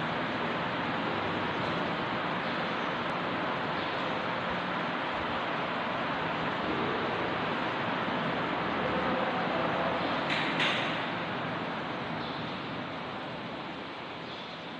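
Steady, even background noise with no distinct pitch, with a brief sharp sound about ten and a half seconds in.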